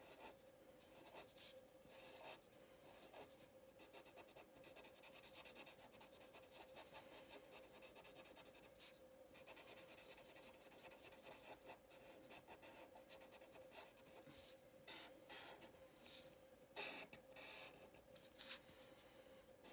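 Faint scratching of a felt-tip permanent marker drawing short strokes on paper, with a few louder strokes near the end. A thin steady hum runs underneath.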